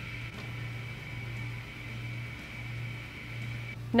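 Steady low electrical hum with a faint, thin high-pitched whine over it; the whine cuts off just before the end.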